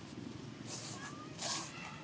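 Macaques handling and biting a fruit among dry leaves: two short crackling, crunchy rustles a little under a second apart.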